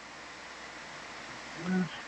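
Steady low hiss of background noise on the audio feed, with a brief voiced sound from a person near the end.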